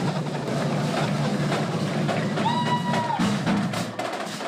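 Drums and percussion playing a beat, snare and bass drum, with a single held high call or whistle about two and a half seconds in.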